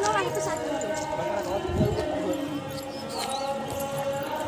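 People's voices, with footsteps on loose stones and a few low knocks as they walk down a rocky path.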